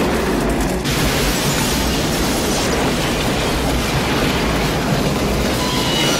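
Film sound effects of a passenger train running at speed: a loud, continuous rumble with a heavy low end.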